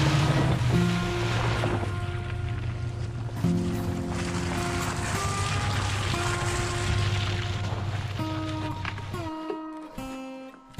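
Background music with sustained notes, laid over the rushing splash and low rumble of a pickup truck driving through a muddy puddle. The rumble and splash noise stop near the end, leaving the music.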